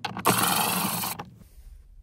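Power drill with a Phillips bit running for about a second as it backs a screw out of plastic console trim, then stopping.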